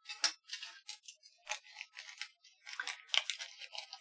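Small metal hardware, M3 hex nuts, rattling and clicking as they are picked through by hand: a quick, irregular run of light clicks.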